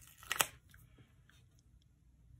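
Handling of a paper sticker and its backing as a gold-foil sticker is peeled off and placed: one sharp click about half a second in, then faint rustling.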